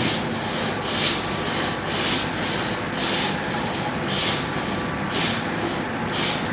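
Bhastrika pranayama (bellows breath): forceful, audible breaths of air through the nose, pulsing about once a second.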